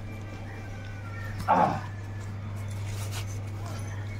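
A dog barks once, a short call about a second and a half in that falls in pitch, over a steady low hum.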